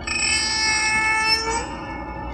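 A harsh, high-pitched screech with many overtones that starts suddenly, holds for about a second and a half and then drops away: an eerie sound effect from a horror-film soundtrack.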